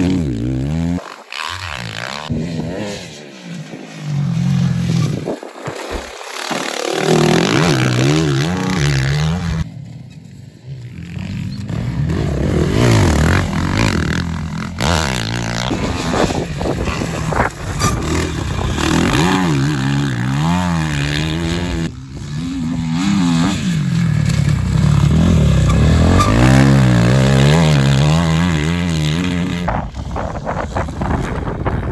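Motocross dirt bike engines revving hard, the pitch climbing and falling again and again as the throttle opens and closes. The bikes fade and return as they pass, loudest near the end.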